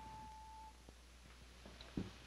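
Near silence: faint room tone, with a faint steady high tone fading out within the first second and a soft click.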